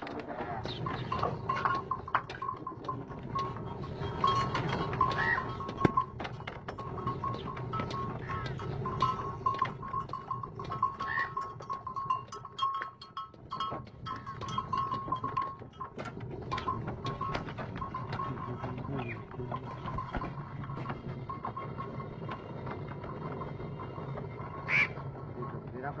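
Traditional stone flour mill (chakki) running: a steady low rumble from the turning millstone, with dense irregular clicking and an on-and-off thin whine. A short sharp sound comes about a second before the end.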